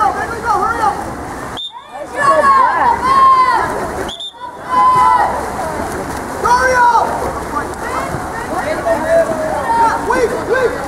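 Shouts and calls from people at a water polo game, over splashing water from the players swimming. The sound cuts out briefly twice, about two and four seconds in.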